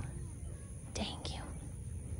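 Soft, breathy, whisper-like sound about a second in, over a low steady rumble.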